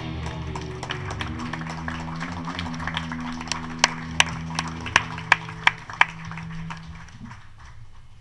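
A live band's sustained chord ringing and fading away, with hands clapping along in a steady rhythm of about three claps a second, loudest midway through.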